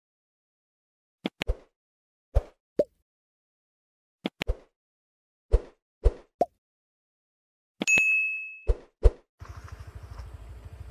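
Like-and-subscribe animation sound effects: short mouse clicks and pops in small groups against dead silence, then a single bell ding about eight seconds in that rings and fades, followed by two more pops.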